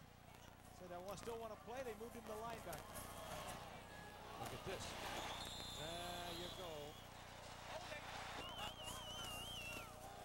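Faint, indistinct voices under low game-broadcast background noise, with a high warbling tone lasting about a second near the end.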